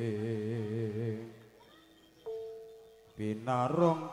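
A male vocalist chanting a long, wavering held note in Javanese jaranan style, which fades out about a second and a half in. After a brief lull, a single steady instrument note sounds for about a second, then the chant picks up again near the end.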